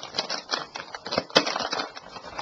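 Crinkly plastic snack bag crackling as it is handled and opened, with one sharp louder snap a little past halfway.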